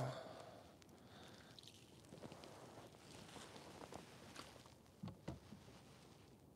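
Near silence: faint handling of fishing tackle, with two soft knocks about five seconds in.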